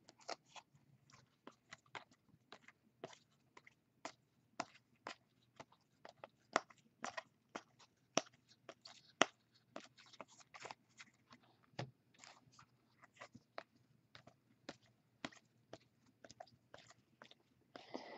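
Baseball trading cards being flipped through one at a time in the hands: a faint, irregular run of light clicks and snaps, a few each second, as each card edge slides off the stack.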